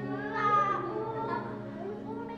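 Sustained dramatic string music with a high, wavering vocal cry over it, loudest about half a second in: a woman crying out or wailing without words.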